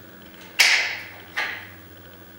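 Rubber-and-plastic diaphragm assembly of a Hiblow HP-80 septic air pump being pushed onto its rod block: two short scraping sounds about a second apart, the first louder.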